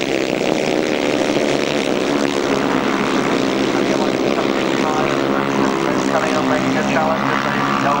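Several solo grasstrack racing motorcycles with single-cylinder engines running hard at high revs as they race round the track, a loud, continuous engine drone.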